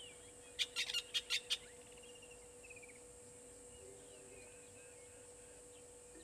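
A rapid run of about six loud, harsh, rasping bird calls about half a second in, followed by a short falling trill. Fainter chirps come from other birds, over a steady low hum and a high steady hiss.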